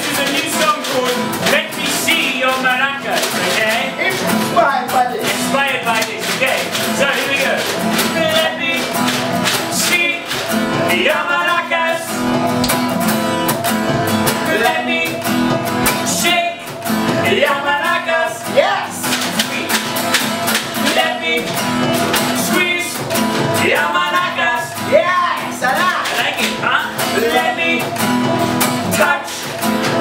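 Live band music: an acoustic guitar strumming under male vocals.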